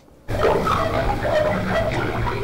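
Pebbles falling into drill holes in the rock of a limestone mine, a dense clatter with short hollow ringing tones that starts suddenly about a quarter of a second in.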